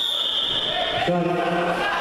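A referee's whistle blown in one high, steady blast about a second long, followed by a man's short call.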